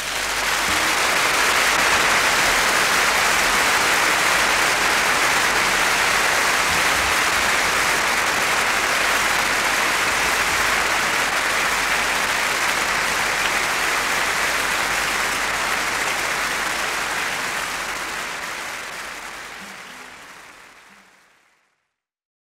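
Concert audience applauding after a song ends: a steady clapping that fades out over the last few seconds.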